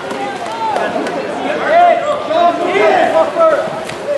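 Several voices calling and shouting over one another, players and spectators at a water polo game, with no single clear talker.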